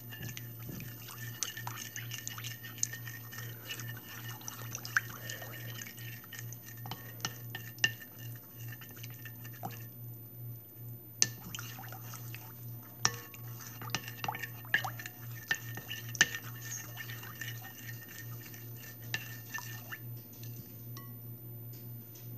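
A chopstick stirring white glue and water in a bowl: wet stirring with irregular sharp clicks as the stick knocks the bowl, pausing briefly twice, over a steady low hum.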